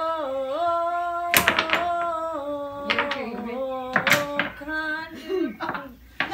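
A young woman singing unaccompanied, holding long notes that step up and down, as another try at a song. Two sharp knocks cut in, about a second and a half and four seconds in.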